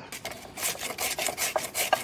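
A red-hearted radish being shredded on a handheld plastic grater, in quick rasping strokes at about six or seven a second.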